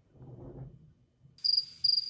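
Cricket chirping sound effect: two short, high chirps beginning about two-thirds of the way through, over a hiss that switches on abruptly with them.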